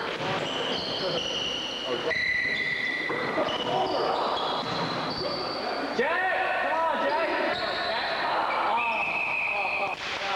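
Basketball game in a gym: sneakers squeaking on the court floor in many short high squeaks, with the ball bouncing and players' voices echoing in the hall.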